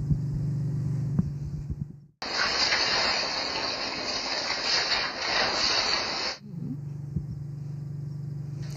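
Trees burning beside a house, heard through a security camera's microphone as a loud crackling, hissing rush of fire. It starts suddenly about two seconds in and cuts off after about four seconds. Before and after it there is a steady low hum.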